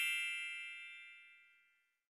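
Fading tail of a bright, bell-like chime sound effect, several high tones ringing together and dying away within about a second and a half.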